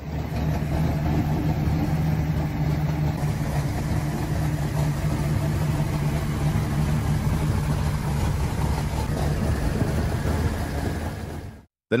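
Dodge Challenger R/T's V8 engine idling with a steady, even low rumble. The sound cuts off just before the end.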